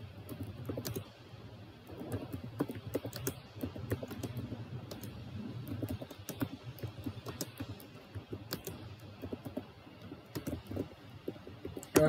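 Typing on a computer keyboard: quick, irregular keystrokes in short runs as a line of text is entered.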